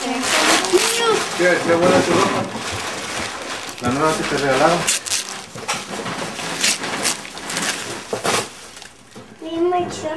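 Wrapping paper being torn and crinkled off a present in a series of short rips, with people's voices talking over the first half.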